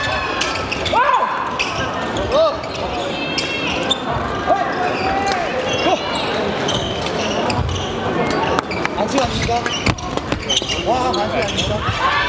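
Badminton players' court shoes squeaking on a wooden hall floor in short, frequent chirps, mixed with the sharp taps of rackets hitting shuttlecocks from several courts at once, echoing in a large sports hall.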